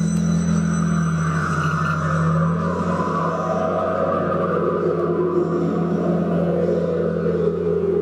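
Dark electronic drone from a sound installation: a steady low hum with held tones under a rushing, noisy middle layer, and thin high tones that fade out in the first two seconds.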